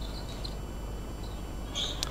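Faint gym sound of a basketball game in play: a few short, high sneaker squeaks on the hardwood court over a low background hum of the arena.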